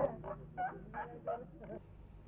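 Young elephant calf giving a run of short, high squeaks, about three a second and growing fainter, as it struggles in vain.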